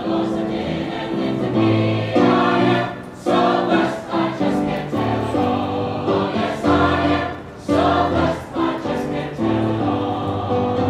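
Church choir singing in full chords, the notes held in long phrases with short breaks between them.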